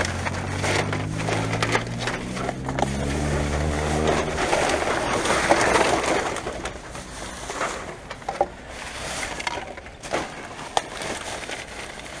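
Plastic garbage bags and loose rubbish rustling and crinkling as gloved hands dig through them, with scattered clicks and clatters of packaging. A low steady hum runs underneath for the first few seconds and then fades out.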